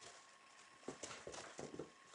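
Weimaraner dogs moving about: a few faint, irregular taps and clicks in the second half, like paws and claws on the floor.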